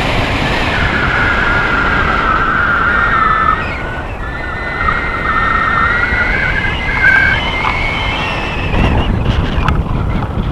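Wind buffeting the handheld camera's microphone in tandem paraglider flight, a loud steady rush with a thin wavering whistle-like tone running through it. A few knocks come near the end as the camera on its stick is swung.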